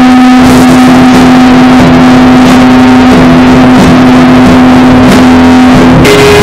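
Harsh noise: a very loud, dense wall of distorted noise over a single steady droning tone.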